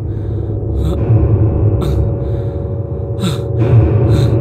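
A man's sharp, frightened breaths, three of them about a second or so apart, over a steady low droning rumble.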